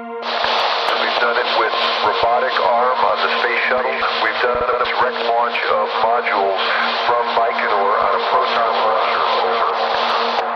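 A thin, radio-like voice talking over a steady held tone of ambient background music. The voice cuts in suddenly just after the start and stops right at the end.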